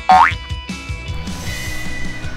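A quick sound effect rising in pitch just after the start, then background music with a steady beat.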